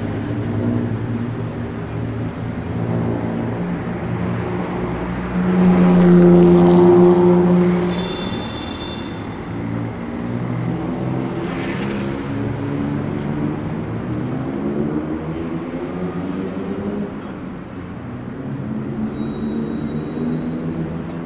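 Road traffic: car and motorbike engines passing steadily, with one vehicle passing close about five to eight seconds in, its low engine hum the loudest sound.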